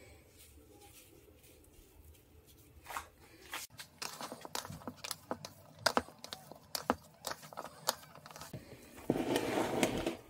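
Hands kneading raw minced beef in a glass bowl: irregular quick clicks and crackles of the meat being squeezed and turned, starting about three seconds in, with a louder, denser stretch near the end.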